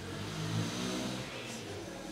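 A motor vehicle's engine accelerating, a steady low hum with a hiss above it that fades near the end.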